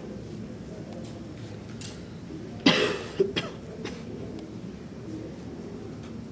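A person coughing: one loud cough about halfway through, then a shorter one right after, over low room murmur.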